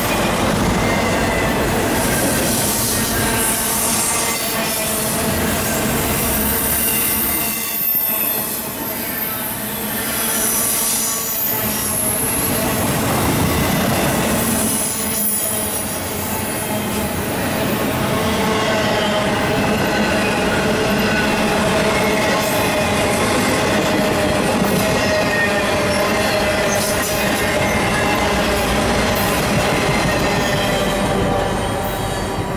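Loaded double-stack intermodal well cars rolling past on steel rails, a steady loud rumble and clatter of wheels. Several high steady wheel-squeal tones ring over it, with short lulls about 8 and 16 seconds in.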